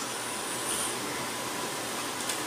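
Steady background hiss, the room tone of a pause in speech, with no distinct event.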